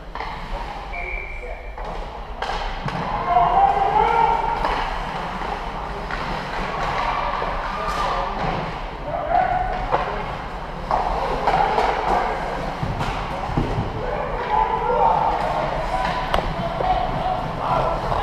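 Indoor ice hockey game: players and spectators shouting and calling out, with sharp knocks of puck and sticks against the boards and ice scattered throughout.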